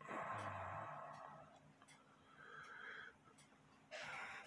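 A person breathing out audibly, like a sigh: a longer exhale at the start that fades over about a second and a half, then a shorter, fainter one about two and a half seconds in.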